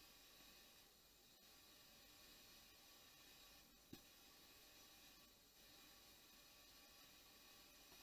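Near silence: faint room tone, with one brief faint click about four seconds in.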